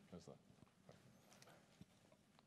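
Near silence: room tone with a few faint, short knocks and rustles.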